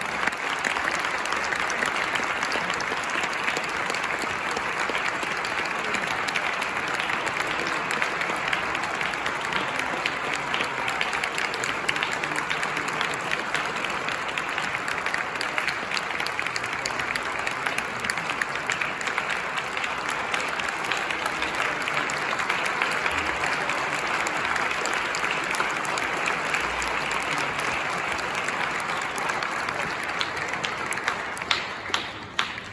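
Audience applauding steadily and at length, many hands clapping at once, in an ovation at the end of a piece.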